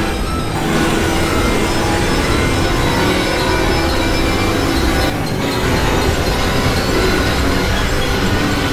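Experimental electronic noise music: a loud, dense wash of synthesizer noise and drones with faint held tones, briefly thinning just after the start and again about five seconds in.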